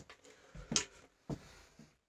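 Handling noise: a few soft knocks and rustles, the loudest about three quarters of a second in, as a violin and bow are raised into playing position.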